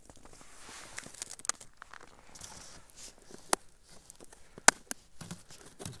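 Close handling noise from ice-fishing gear: rustling with several sharp clicks and taps, the loudest click a little before the end.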